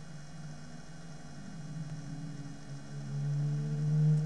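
Steady electrical hum with a second, higher tone above it. It grows louder about three seconds in.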